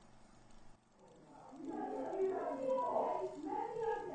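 A high-pitched voice, wordless, with a wavering pitch. It comes in out of faint hiss about a second and a half in and grows louder.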